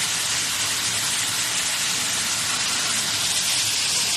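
A waterfall and the rocky stream below it, giving a steady rush of falling and flowing water.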